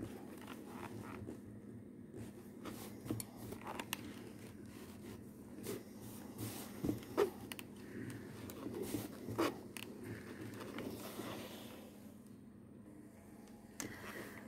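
Faint rustling and scraping of a steam iron sliding over crochet lace on a cotton cloth while a hand stretches the lace, with scattered soft clicks; it quietens near the end.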